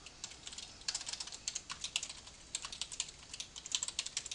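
Computer keyboard typing: quick runs of keystrokes with short pauses between them.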